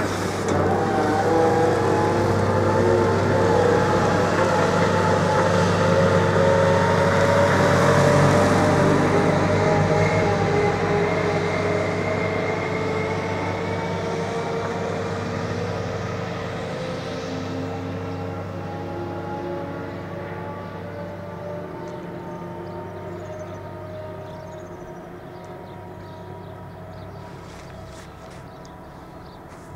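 Electric train's motor whine, several held tones slowly falling in pitch over a low steady hum, loudest about a quarter of the way in and then fading steadily as it draws away.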